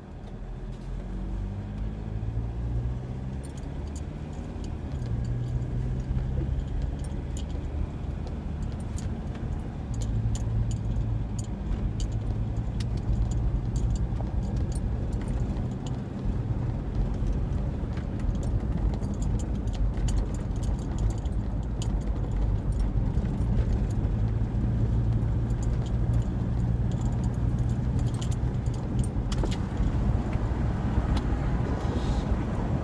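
Car engine and road noise heard from inside the cabin of a moving Ford: a steady low drone whose pitch steps up and down, louder from about ten seconds in. Frequent light clicks and rattles run through it.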